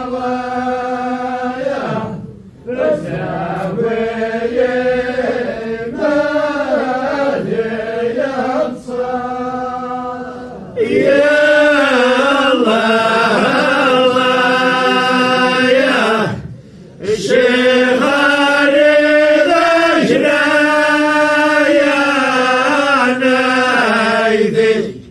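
A group of voices chanting together in unison, in long drawn-out phrases with brief pauses between them; the chant grows louder about eleven seconds in.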